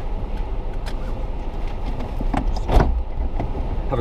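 Steady low rumble of a car heard from inside its cabin, with a few light clicks and a single short knock about three-quarters of the way through.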